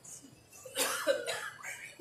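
A person coughing, a few short coughs beginning about a second in.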